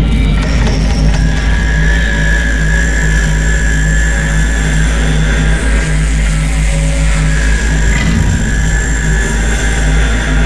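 Sound-designed show soundtrack: a loud, steady low rumble under a dense mechanical-sounding texture, with a high held tone coming in about a second in.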